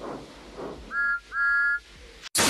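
Steam engine whistle blown twice, a short toot about a second in and then a longer one, each a steady chord of several pitches.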